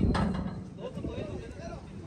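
Faint voices talking in the background over low outdoor noise, with no distinct mechanical sound.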